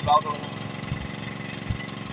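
An engine running steadily: a low, even hum with faint irregular knocks.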